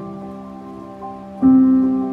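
Slow, soft piano music with sustained notes and a loud low chord struck about one and a half seconds in. Underneath runs a quieter, steady rush of flowing stream water.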